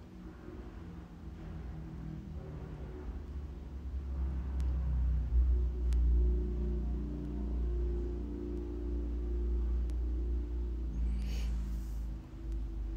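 Low, steady background rumble with a hum, growing louder about four seconds in and easing near the end.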